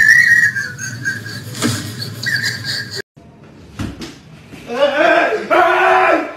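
A high-pitched, whistle-like squeal that dips and rises again over about three seconds, then cuts off. About a second later, loud yelling voices start.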